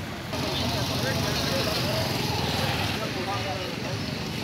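Street ambience of road traffic with indistinct voices in the background. The sound gets louder and brighter about a third of a second in.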